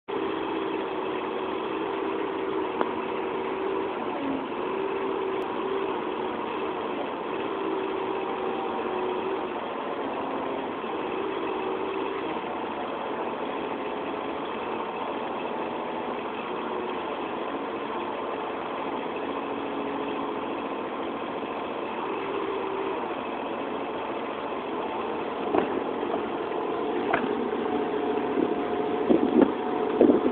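Excavator engine running steadily, with a tone that comes and goes and shifts in pitch. For the last few seconds, a run of sharp knocks and clanks joins it.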